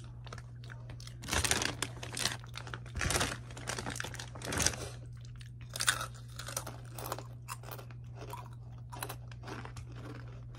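Crunching and chewing of Takis rolled tortilla chips, two people biting into them. The loudest crunches come in the first five seconds, then lighter, crackly chewing, over a steady low hum.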